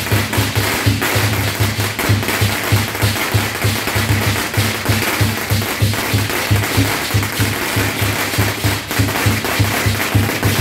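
Temple procession percussion: a drum beats evenly, about four strokes a second, under a dense clashing wash of cymbals and gongs.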